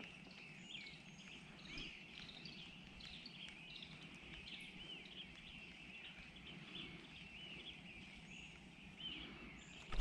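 Faint birdsong: many short, high chirps from small birds, scattered and overlapping, over a quiet background hush.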